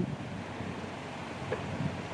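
Steady outdoor wind noise: an even rush with no distinct events.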